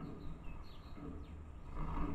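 House sparrows giving short, scattered chirps over a steady low rumble that grows louder near the end.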